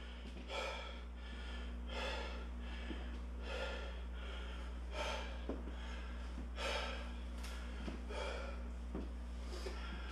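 A man's slow, deep breaths in and out, one every second or so, as he recovers from hard exercise and deliberately slows his breathing. A steady low hum lies underneath.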